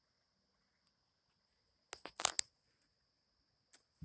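Faint, steady high-pitched drone of insects outdoors, with a brief cluster of sharp crackling clicks about halfway through.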